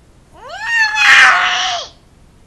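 A young child's loud, high-pitched squeal that rises in pitch, holds for about a second with a harsh, strained middle, then drops away.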